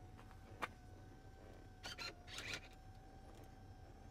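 Chrysler Pacifica's power-folding third-row seats lowering, the seat motors giving a faint steady whine. A sharp click comes about half a second in and a few softer clicks or knocks around two seconds in. The fold is slow.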